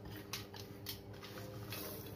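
Whole spices, small seeds and cardamom pods, swept by hand across a stainless steel tray: a faint rustling scrape with a few light clicks.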